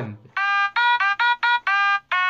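An Otamatone played in a quick run of short, separate notes, about six in under two seconds, each at a slightly different pitch, starting a third of a second in.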